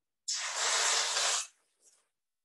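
Reddi-wip aerosol whipped-cream can spraying: one hiss a little over a second long that starts and stops sharply, with a brief faint puff near the end.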